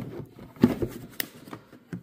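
Plastic battery box being handled: a few soft knocks and rubbing, with one sharp click about a second in.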